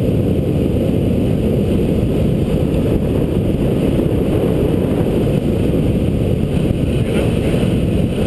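Steady, loud wind rumble buffeting a GoPro camera's microphone as the bicycle descends at speed, a deep, even roar with no breaks.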